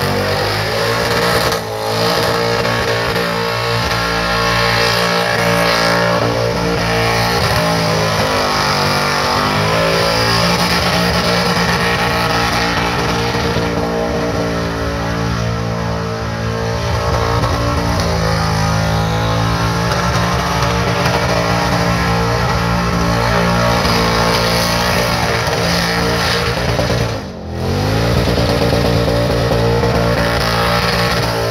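LS1 5.7-litre V8 in a KE Corolla held at high revs through a tyre-smoking burnout, the revs dipping and climbing back a few times, most deeply near the end. Rock music with guitar plays over it.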